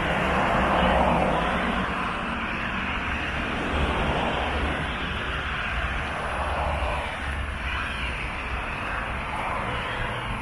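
Road traffic on a multi-lane road: a steady rushing of tyres and engines that swells and fades several times as vehicles pass, loudest about a second in.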